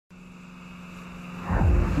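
Car engine sound effect, a steady hum growing louder as the car approaches; about one and a half seconds in, a much louder, deeper sound comes in.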